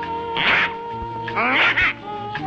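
Cartoon soundtrack: a held chord of background music, with a short hissing swish about half a second in. About a second and a half in comes a brief cartoon vocal sound whose pitch bends up and down.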